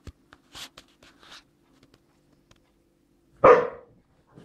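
A dog play-fighting on a sofa gives one loud, short bark near the end, after a few faint soft noises.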